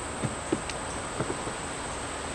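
Steady high-pitched insect drone, with a few faint brief low sounds in the first second and a half.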